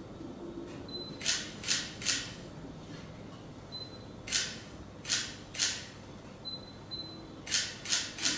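Camera shutter firing in three quick bursts of three shots each, every burst preceded by a short high focus-confirmation beep.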